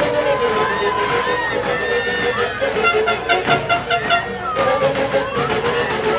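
Live huaylarsh band music, with saxophones playing the melody in held notes over a steady, even beat.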